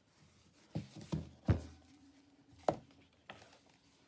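Hardcover Roget's Thesaurus handled and set down on a tabletop: a handful of soft knocks and taps, the loudest a dull thump about one and a half seconds in and a sharper tap a little over a second later.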